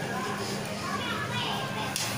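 Faint background voices, children's among them, over a steady low hum.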